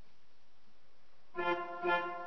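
Johannus Symphonica 45 digital organ sounding its first notes about one and a half seconds in, a short detached note then another, on a reedy registration of trumpet, tuba and oboe stops with flute. Before that there is only faint hiss.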